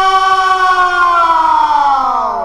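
A held electric guitar note sliding slowly down in pitch, falling faster near the end, as a heavy metal track winds down.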